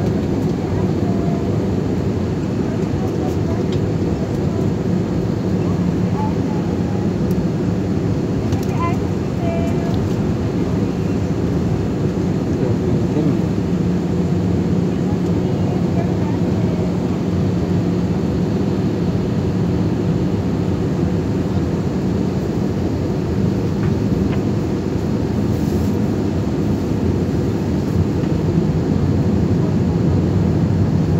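Jet airliner cabin noise in flight: a steady drone of turbofan engine and airflow with a constant low hum.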